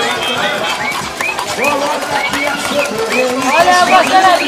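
Several battery-operated walking toy horses sounding together from their electronic sound chips: many short, overlapping chirping tones repeat throughout, and a louder whinny-like call with falling pitch comes near the end.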